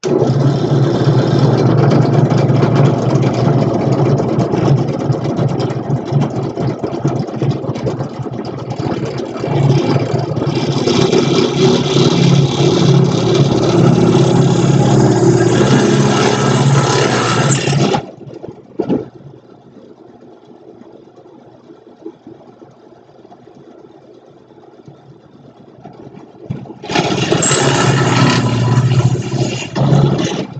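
Benchtop drill press running with a steady motor hum while boring into a block of pine with a spade bit. It cuts off abruptly about 18 seconds in and runs again near the end.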